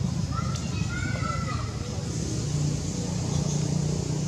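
Macaques giving a few short, high chirping calls in the first second and a half, over a steady low hum.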